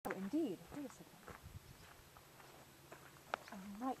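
Short snatches of a person's voice: a brief utterance at the start and another short sound near the end that holds low and then rises. A sharp click comes just before the second one.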